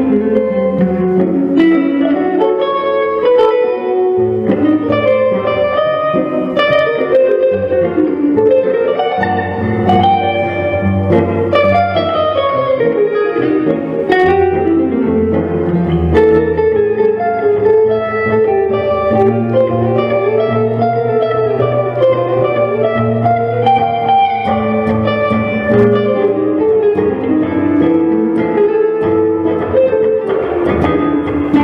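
Jazz guitar music, a plucked guitar melody over a continuous low accompaniment, playing without a break.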